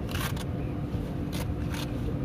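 Short scraping rustles of an inflatable life jacket's fabric cover being handled, a few strokes near the start and again towards the end, over a steady low rumble.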